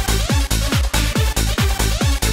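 Hard house dance music with no vocals: a steady four-to-the-floor kick drum, each beat a deep thud falling in pitch, over a sustained bass and bright percussion.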